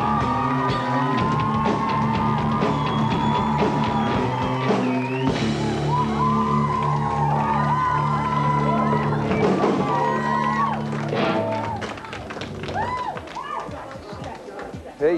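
A rock band playing live, with electric guitars and a drum kit, and the playing winds down and stops about twelve seconds in.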